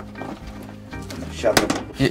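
Background guitar music under a loud wooden knock about one and a half seconds in, followed by a few lighter clicks, from the slatted wooden door of a pigeon transport basket being handled.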